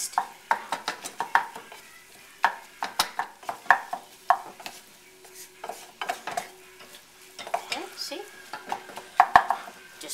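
Wooden spoon stirring and scraping crumbled sausage and flour around a nonstick skillet in irregular strokes, with a few sharper knocks against the pan, the biggest near the end. A light sizzle comes from the pan over the gas flame as the flour is worked into the meat for a gravy roux.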